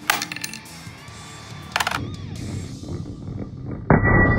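Quarters tossed onto a wooden tabletop and board, clinking and bouncing in a quick rattle right at the start and again a little under two seconds in, with a louder knock just at the end. Background music plays underneath.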